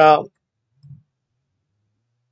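A single soft computer mouse click about a second in, with the end of a spoken word just before it and silence after.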